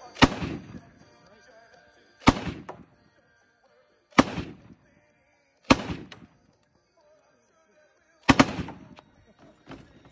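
M1918 Browning Automatic Rifle in .30-06 fired from the open bolt: five single shots spaced roughly one and a half to two and a half seconds apart. A lighter knock follows near the end.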